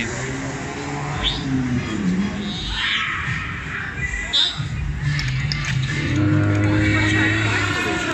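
Fairground music playing amid the chatter of passers-by, with long held notes through the second half.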